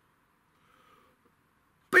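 Near silence, then right at the end a man's voice calls out "Bing!" as a mouth-made sound effect.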